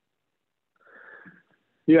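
Silence, then a short audible intake of breath about a second in, and a voice starting to speak right at the end.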